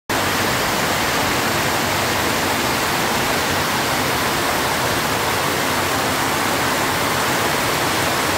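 Heavy rain pouring down, a loud, steady, dense hiss with no let-up.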